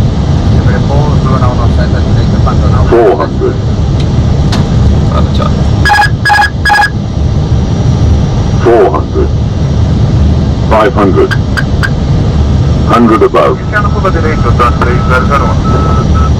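Steady low rumble of airflow and engines in an Airbus cockpit on final approach, with radio voices. About six seconds in, the autopilot-disconnect warning sounds as a short burst of three pitched tones, the sign that the autopilot has just been switched off for a manual landing.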